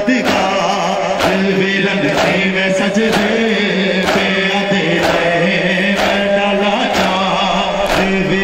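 A noha, a Shia mourning lament, chanted by male voice in long held notes over a steady beat struck about once a second.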